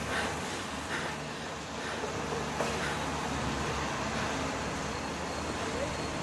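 Steady city street ambience: traffic noise with no single sound standing out.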